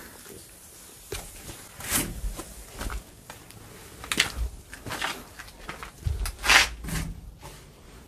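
Movement and handling noises: a handful of short rustles and bumps at irregular intervals as the camera is carried and moved around.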